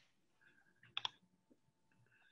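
A single sharp computer mouse click about halfway through, with a few fainter ticks around it, amid near silence.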